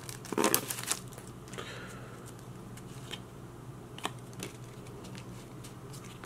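Foil Pokémon booster-pack wrapper crinkling as the cards are slid out of it, mostly in the first second, followed by a few faint clicks of the cards being handled.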